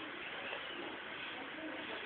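Quiet room noise: a steady low hiss with a few faint, indistinct sounds and no clear event.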